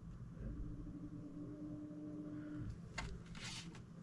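Faint handling of a power supply and its bundled modular cables: a single click about three seconds in, then a brief rustle. A faint steady hum runs through the first half.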